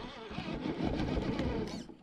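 Electric motor and geared drivetrain of an RC rock crawler running under load, a rough, fluttering whir that starts about half a second in and stops just before the end.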